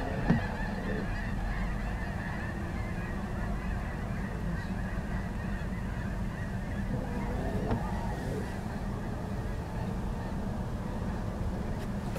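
A large flock of migrating geese calling together: a dense, continuous chorus of overlapping honks, with a steady low rumble underneath.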